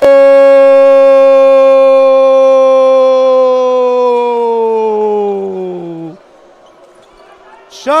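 Futsal TV commentator's drawn-out goal cry, a single held 'Gooool' on one steady note that sags in pitch as his breath runs out and stops about six seconds in.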